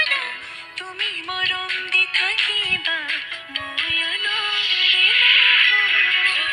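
A recorded song playing: a singing voice carrying a melody over instrumental backing.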